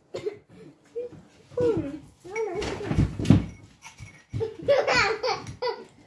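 Children laughing in three bouts, with a little speech-like babble mixed in.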